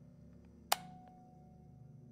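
A single sharp click less than a second in, followed by a brief ringing tone, over a faint steady low hum.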